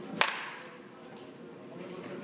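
A baseball bat hitting a pitched ball once, a sharp crack about a quarter second in with a short ringing tail.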